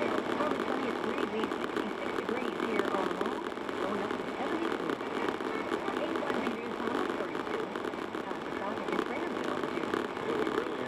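Car radio playing a spoken news broadcast, indistinct and thin-sounding with almost no low end.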